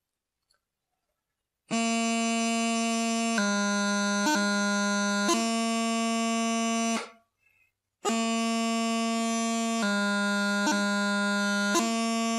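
Highland bagpipe practice chanter playing the taorluath movement from low A: a held low A, then low G broken by quick D and E grace notes, and back to low A. The phrase is played twice, with a pause of about a second between.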